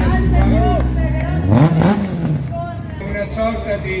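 Rally car engine running low and close by, then revved once about a second and a half in, rising and falling again as the car drives off. Crowd chatter and a voice underneath.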